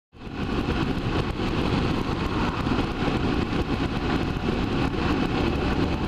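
Steady wind rush and engine noise of a BMW F650ST single-cylinder motorcycle cruising at road speed, picked up by a camera mounted on the bike. It fades in right at the start.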